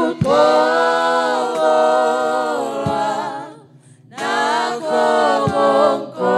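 Worship singers singing unaccompanied, holding long notes, with a short break about three and a half seconds in before the singing resumes.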